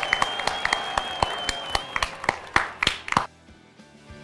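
A small group clapping, the claps thinning out and stopping after about three seconds. A thin, steady high tone sounds over the first half.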